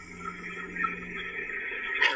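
Hiss and crackle of a poor-quality recorded 911 phone call, with a steady low hum underneath and no clear words. A louder, muffled voice-like sound breaks in at the very end.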